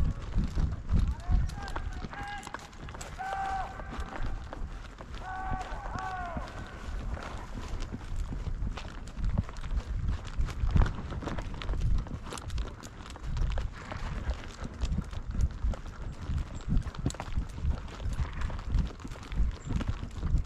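Hoofbeats of a ridden horse moving through dry grass, heard from the saddle as irregular low thumps and rumble. A person's drawn-out calls sound a few times in the first seven seconds.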